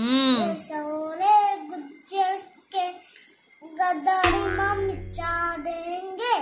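A young boy singing a desi song unaccompanied, in short sung phrases with brief pauses between them. A short low buzz comes in about four seconds in and lasts about a second.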